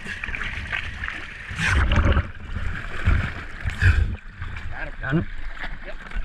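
Water sloshing and splashing at the side of a boat, with irregular low buffeting on the camera's microphone and brief muffled voices.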